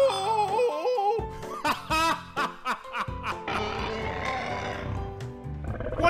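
Cartoon dinosaur characters laughing and giggling in high, warbling voices over background music, followed by a couple of seconds of steady noise under the music.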